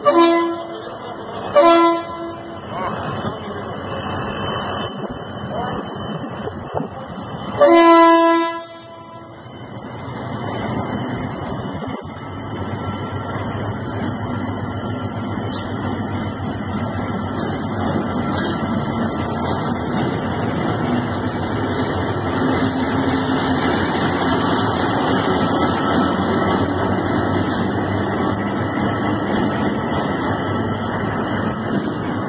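Diesel shunting locomotive DF7G-C sounding its horn: two short toots, then a longer blast about eight seconds in. After that its engine and running gear grow steadily louder as it rolls up close.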